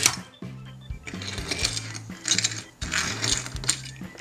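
Light background music with a steady low line. Over it come short bursts of small die-cast toy cars rolling and being handled on a hard tabletop.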